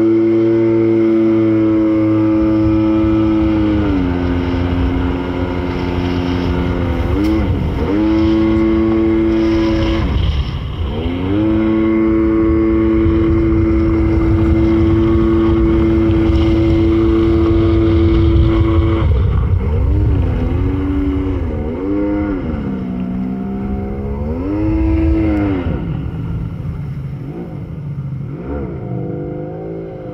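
Arctic Cat Tigershark jet ski's two-stroke engine running under way. It holds a steady pitch for long stretches, drops and picks back up a few times in the first half as the throttle is eased off and reopened, and is blipped up and down repeatedly in the second half.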